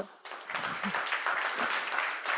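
Audience applauding. The applause starts just after a brief spoken word and holds at an even level throughout.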